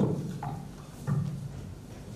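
Handling noise through a live handheld microphone as it is worked into its stand clip: two dull thumps about a second apart, with a small click between.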